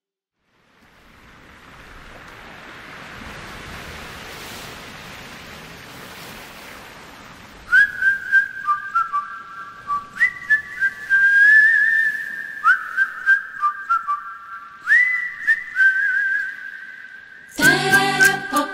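A soft rushing noise fades in and holds for several seconds, then a whistled melody begins about eight seconds in: short notes, each scooping up into its pitch, with light clicks behind them. A full band comes in right at the end.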